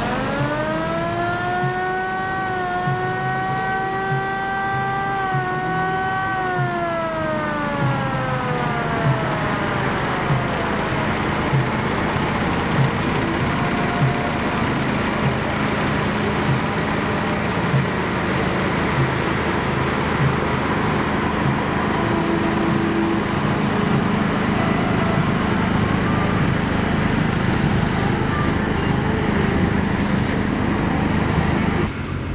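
A passing motor engine rising in pitch over the first couple of seconds, holding a steady high note, then falling in pitch as it fades out about ten seconds in. A steady low hum runs underneath, with soft knocks about once a second.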